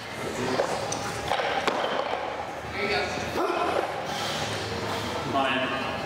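Indistinct background voices in a gym, with a louder call near the end.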